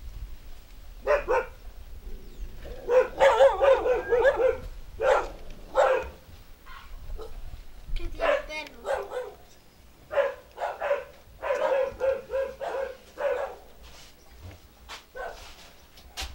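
A dog barking repeatedly in short barks, with quick runs of barks about three seconds in and again from about eleven to thirteen seconds.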